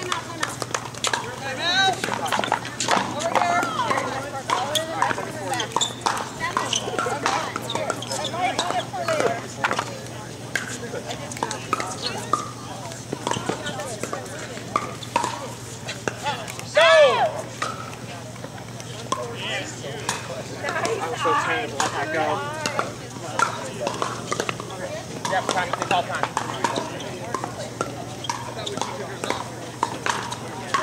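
Indistinct chatter of players and onlookers around pickleball courts, with scattered sharp pops of paddles striking plastic balls on nearby courts. One loud call rises and falls about 17 seconds in.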